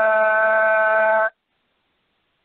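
A man's voice holding one long, steady chanted note at the end of a recited Sanskrit verse. It ends abruptly about a second and a half in.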